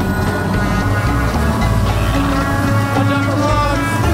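Background music with held notes that change every second or so, laid over a bass boat's outboard motor running at speed.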